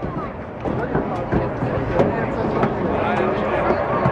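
NASCAR Sprint Cup stock car's V8 engine running at speed on a qualifying lap, heard from the grandstand. The sound builds about half a second in and then holds steady, with echoing PA speech over it.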